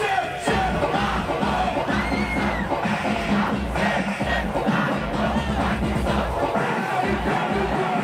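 Brazilian funk music over a loud sound system with a large crowd cheering and shouting along. The heavy bass drops out for a moment near the end.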